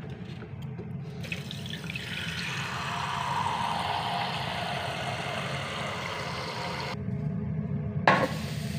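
A kitchen tap runs into a small non-stick saucepan at a stainless-steel sink, filling it with water. The rush of water grows in the middle, and the flow stops about a second before the end.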